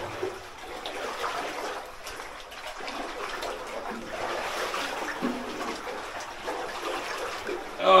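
Feet wading through water on the floor of a flooded rock mine tunnel, a steady irregular sloshing and splashing with each step.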